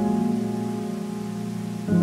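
Slow solo piano: a sustained chord fades away and a new chord is struck near the end, over a steady hiss of falling water.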